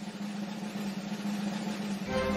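Orchestral drum roll over a held low note, growing a little louder: the opening of a national anthem recording.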